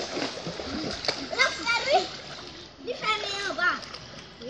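Pool water splashing as a child goes into a swimming pool, with children's high voices calling out over it twice.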